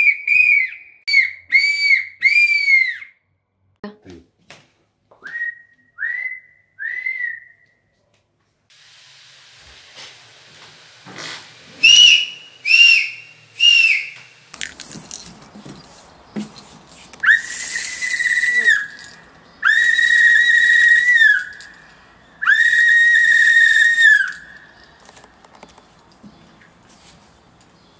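Hand-held whistles blown in a series of blasts: several quick short blasts at first, a few fainter short ones, then three short higher-pitched blasts, and near the end three long held blasts.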